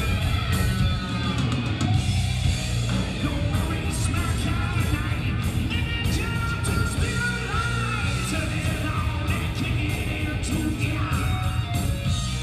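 Live rock band playing loud: electric guitars, bass guitar and drum kit, heard from the audience.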